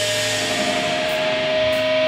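Electric guitar feedback through an amplifier: one steady, held tone with faint overtones over constant amp noise, the sustain a band holds before a song begins.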